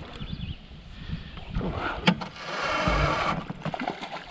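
A hooked smallmouth bass splashing and thrashing at the water's surface beside a raft. A sharp knock comes about halfway, then a splash lasting about a second.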